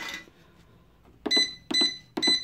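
Keypad of a digital price-computing scale beeping twice in the second half as a unit price is keyed in, each press a short high electronic beep. A brief handling noise comes at the very start as the copper winding is moved on the scale's steel platform.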